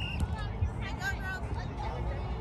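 Faint, distant voices of children and spectators calling out across an open playing field, with a steady low rumble underneath.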